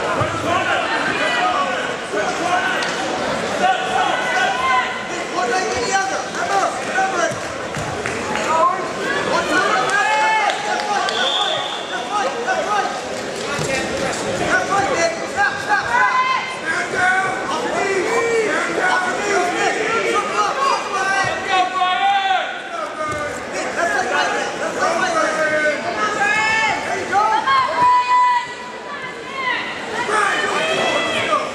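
Many voices shouting and calling at once, as spectators and coaches yell during a wrestling bout.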